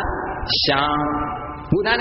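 A Buddhist monk's voice chanting in Pali, held in two long, steady notes with a brief break between them.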